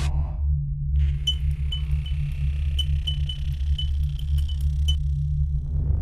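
Electronic intro music: a steady deep bass pulse under a run of short, high electronic blips that starts about a second in and stops about five seconds in.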